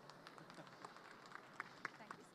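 Faint, scattered hand clapping from a few audience members: a handful of sharp claps at irregular intervals.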